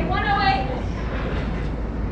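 A person's voice speaking briefly at the start, over a steady low rumble.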